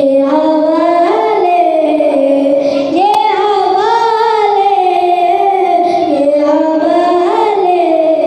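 A boy singing a naat (Islamic devotional poem) solo and unaccompanied, in long sustained melodic phrases with a short break about three seconds in.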